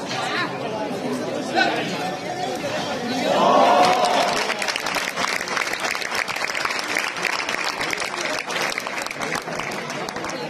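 Crowd of spectators talking and calling out, with one loud drawn-out shout about three and a half seconds in, followed by a spell of scattered clapping.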